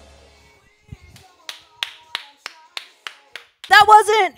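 One person clapping their hands, about eight sharp claps at roughly three a second, as a backing track fades out. A woman starts talking loudly near the end.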